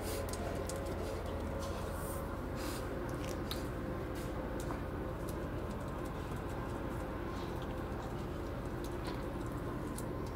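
Steady low machine hum with scattered light clicks and scuffs from dogs moving about a kennel and through its doorway.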